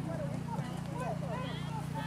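Thoroughbred horse's hoofbeats as it moves across grass, heard under indistinct voices talking in the background.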